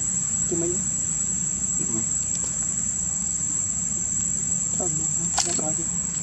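Steady, high-pitched insect drone, one unbroken tone, over a low hum, with a few faint short calls and a sharp click about five seconds in.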